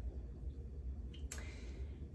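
Quiet room tone: a low steady hum with a single faint click a little after the middle.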